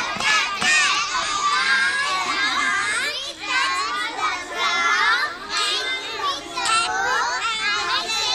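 A group of young children's voices chattering and calling out all at once, many high voices overlapping without pause.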